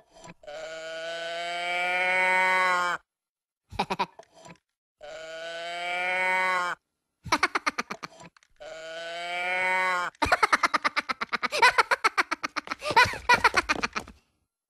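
A cow-print moo box toy tipped over three times, each time giving one long mooing groan that rises in pitch, the last one shorter. After it, a minion's rapid, loud giggling laughter fills the last few seconds.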